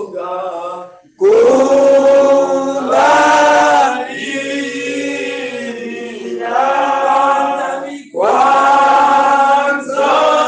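A group of voices sings a slow, chant-like hymn in long held notes. The phrases are separated by brief breaks about a second in and again near the end.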